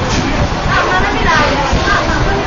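People talking, over the steady low rumble of the moving funicular car.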